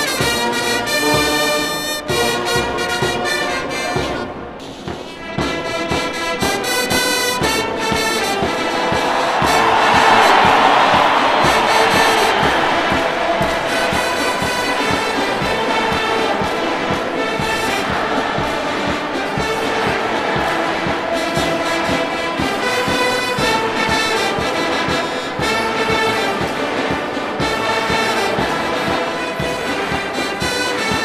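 Military brass band with trumpets and trombones playing a march, with a short lull about four seconds in.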